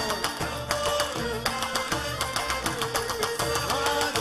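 Oud playing a Gulf-style Arabic melody over a steady hand-percussion beat, with quick plucked notes.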